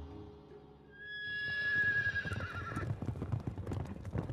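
A horse whinnies from about a second in, one long call that wavers as it falls, over a run of galloping hoofbeats, with background music holding low notes underneath.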